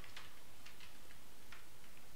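Computer keyboard typing: a handful of light, scattered key clicks over a steady background hiss.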